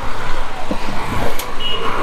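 Street traffic going by: steady engine and tyre noise from passing vehicles, with a sharp click partway through and a short high beep near the end.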